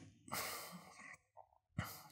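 A man's faint breath out, a soft sigh into a close microphone about a third of a second in, followed near the end by a short quick breath.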